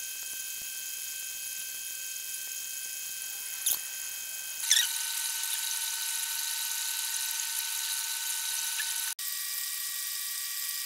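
Steady high-pitched electrical whine made of several fixed tones. It shifts abruptly to a different set of tones about halfway and again near the end, with a couple of faint clicks.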